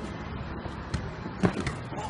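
A few short thuds of a football being kicked and juggled on a street, spaced unevenly, over steady low outdoor background noise.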